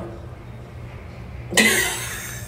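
About one and a half seconds in, a woman gives one short, breathy vocal burst, like a cough or a burst of laughter, over a steady low hum.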